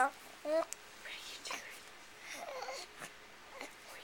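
A baby's vocal sounds: short high-pitched coos in the first half-second, then softer breathy little sounds.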